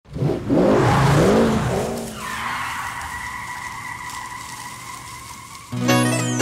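An off-road SUV's engine revving hard, its pitch rising and falling, with tyres skidding. From about two seconds in, a steady, fading tyre squeal carries on. Plucked-string music comes in just before the end.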